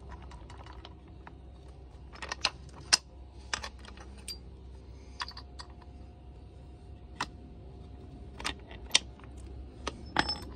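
Irregular sharp metallic clicks and taps, some with a brief ring, as the steel transmission gears and shafts of a Kawasaki KX85 gearbox are handled and knocked against each other and the aluminium crankcase half.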